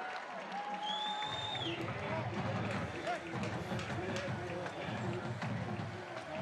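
Crowd noise from a football stadium's stands, with indistinct voices. A brief high tone sounds about a second in, and a low rumble comes in soon after.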